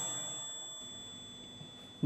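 A single bright metallic ding that rings on and fades away slowly.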